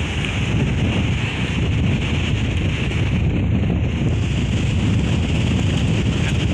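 Strong wind buffeting the microphone in a steady low rumble, over the wash of shallow sea water.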